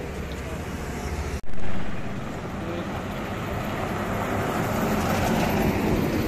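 Road traffic on a highway: a loud vehicle pass about a second and a half in fades away, then the rumble of approaching cars grows steadily louder.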